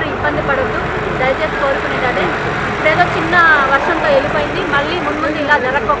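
Speech: a woman talking in Telugu, over steady background noise.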